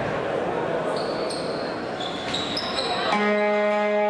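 Basketball hall ambience: murmuring voices and court noise, with a few short high squeaks from about a second in. About three seconds in, a sustained musical chord from the arena sound system starts and holds.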